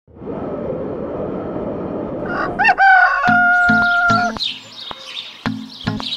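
Opening sound effects: a rushing noise for nearly three seconds, then a rooster crowing that rises and ends on one long held note. As the crow ends, music starts with short, evenly repeated low notes.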